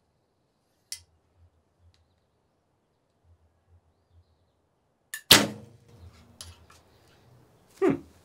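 Recurve bow shot: after a long quiet hold at full draw, the string is released about five seconds in with a sudden sharp snap, led by a faint click and followed by a brief low ringing of the string and limbs. A short, loud sound falling in pitch comes just before the end.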